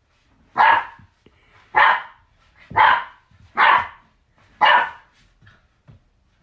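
A puppy barking at a cat: five loud barks, about one a second.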